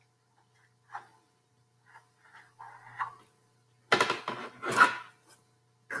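A dry-erase marker writing on a whiteboard: scattered faint strokes, then a few louder, harsher rubs about four seconds in.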